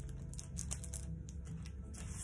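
Foil crisp packets crinkling and ticking lightly as they are handled and smoothed flat on a table, over a low steady room hum.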